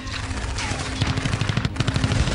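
War-film sound effects: rapid machine-gun fire in dense bursts, with short falling whistles over a low steady rumble.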